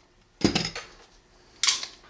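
Metallic handling of a Beretta 92XI pistol and a trigger pull gauge: one sharp click about half a second in, then a brief metal rattle near the end.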